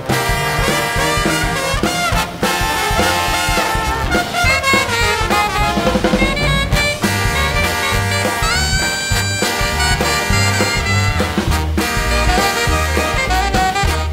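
Big band playing a swing tune, brass out front with a trombone leading over a steady bass. Notes slide down in pitch around the middle and climb again a couple of seconds later.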